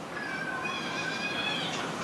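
A faint, high, drawn-out cry in the background, lasting about a second and a half, with a steady hiss underneath.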